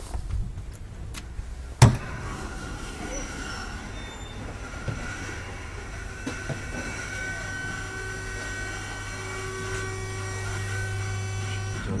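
A single sharp knock about two seconds in, then the steady hum and whine of a KONE hydraulic elevator running, with several held tones. Its low hum builds toward the end.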